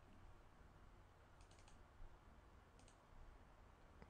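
Near silence: room tone with a few faint computer clicks, a pair about one and a half seconds in, a single one at two seconds and another pair near three seconds.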